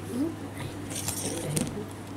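Light clinks of a small ceramic dish being set down on a table, in a cluster about halfway through.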